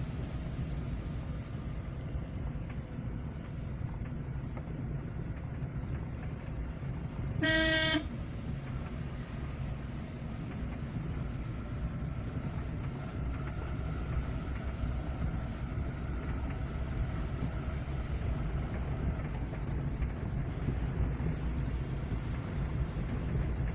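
Car driving on a narrow road, heard from inside the cabin: a steady low engine and tyre rumble. About seven seconds in, a car horn gives one short toot.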